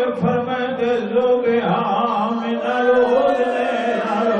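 A man chanting a majlis recitation into a microphone, in long, drawn-out melodic lines rather than plain speech.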